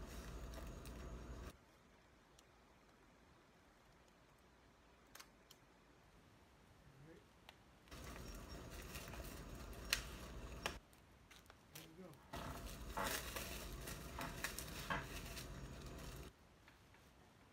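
A 4K Blu-ray package being unwrapped and handled: rustling with sharp clicks of plastic and cardboard. It comes in three stretches with quiet gaps between.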